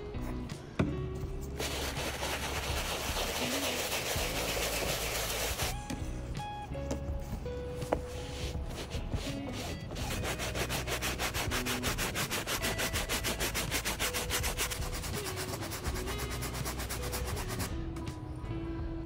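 A bristle shoe brush scrubbing the foamed canvas upper of a sneaker. It scrubs continuously for a few seconds early in the clip, then works in fast, even back-and-forth strokes through the second half. Background music plays underneath.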